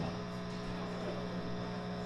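Steady electrical mains hum from the stage amplifiers and PA during a pause in the playing.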